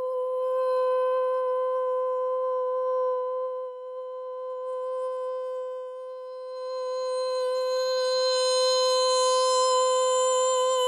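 A single long held musical note, steady in pitch, hum-like. Its overtones grow brighter from about seven seconds in, and the pitch wavers slightly near the end.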